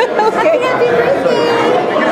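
Party chatter: many people talking at once, with overlapping voices and no single clear speaker.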